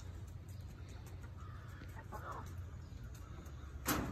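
Hens clucking softly, two short calls in the first half, with a sharp knock just before the end.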